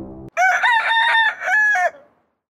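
Music stops abruptly, then a rooster crows once: one loud call of several stepped notes lasting about a second and a half.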